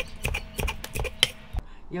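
Kitchen knife chopping thick green onion (daepa) on a wooden cutting board: about eight quick, uneven chops that stop about a second and a half in.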